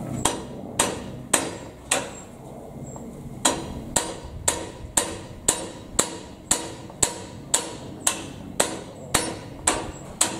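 Repeated hammer blows on metal in a Krone BigPack baler, about two a second, each with a sharp ringing clang. Four strikes, a pause of about a second and a half, then a steady run of about a dozen more.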